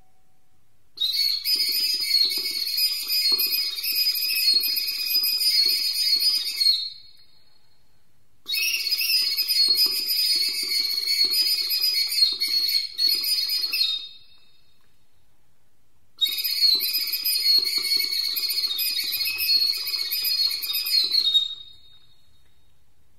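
Recorder (flauta de bisel) playing very high, buzzing trill phrases that imitate the song of the European serin. There are three phrases of about six seconds each, with short pauses between them.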